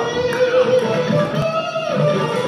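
Live band music led by electric guitar playing held, changing notes over the band.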